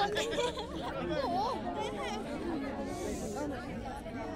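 A crowd chattering, many voices talking over one another at once.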